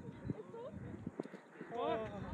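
Men's voices calling out in the open air: a faint call about half a second in and a louder short call near the end, with a few faint knocks in between.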